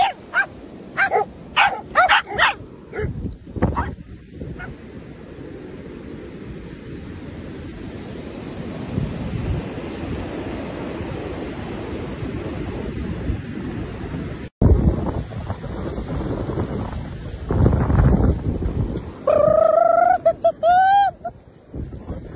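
Several dogs barking and yipping in play, with a quick run of sharp barks at the start. Through the middle a steady rush of wind on the microphone and surf, and near the end a few drawn-out whining cries.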